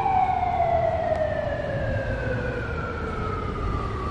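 A siren-like wail gliding slowly and steadily down in pitch, over a low rumble.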